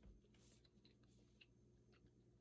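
Near silence: room tone with a low steady hum and a few faint, scattered ticks.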